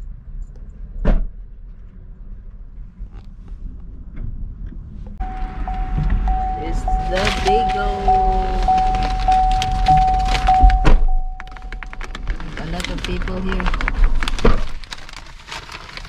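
A GMC pickup's door-open warning chime, a steady repeating ding, sounds for about seven seconds while the driver's door is open and the driver climbs in with a rustling paper bag. There are several knocks and thuds from the door and seat, and a sharp thump about a second in.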